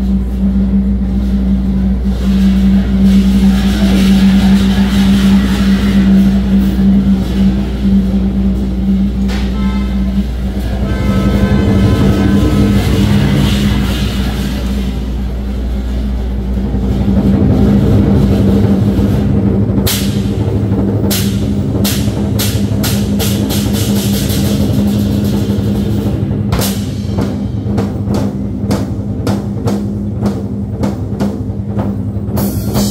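Live Chinese drum-ensemble music. A sustained low drone with swelling sound over it holds for the first two-thirds. About twenty seconds in, sharp strikes on the large barrel drums and cymbals come in and repeat to the end.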